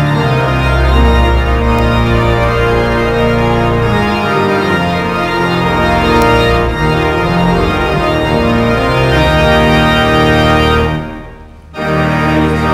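Pipe organ playing slow sustained chords over deep bass pedal notes. The sound breaks off briefly near the end, then resumes.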